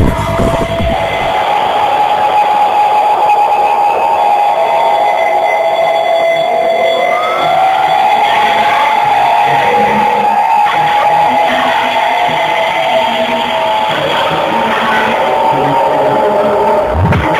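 Loud psytrance played over a party sound system, going into a breakdown: the kick drum and bass drop out about a second in, leaving sustained synth tones with a gliding sweep around the middle.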